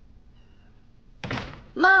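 A door shutting with a single thunk about a second in, with a brief ring after it.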